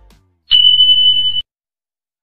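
A single steady, high-pitched electronic beep, one even tone about a second long, starting about half a second in and cutting off suddenly.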